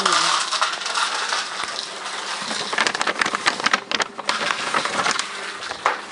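Crackling and crunching close to the microphone: a busy run of small clicks that thickens about halfway through.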